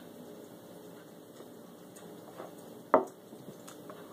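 Faint sounds of sipping from a glass, then one sharp knock about three seconds in as the glass is set down on a wooden table.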